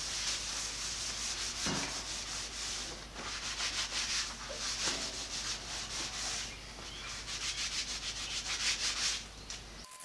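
A paper towel rubbing across a cast iron bandsaw table in repeated back-and-forth wiping strokes, coming in spells of about a second, lifting off loosened rust and cleaner residue.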